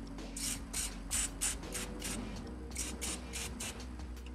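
Aerosol spray can with a trigger handle fired in about a dozen short hissing bursts at the bolt heads of a rear CV joint.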